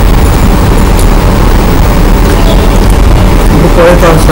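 Loud, steady low rumble of air buffeting the microphone, drowning the room; a man's voice comes in near the end.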